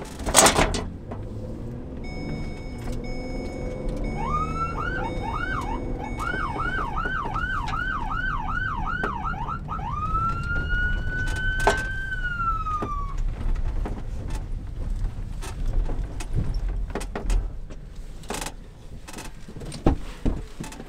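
A police patrol car's electronic siren heard from inside the car: a thump at the start, then a run of fast rising-and-falling sweeps, about two a second, followed by one long rising tone that holds and then falls away. A low engine rumble runs underneath.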